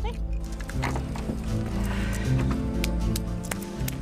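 Background music with steady low held notes, with scattered light clicks and knocks over it.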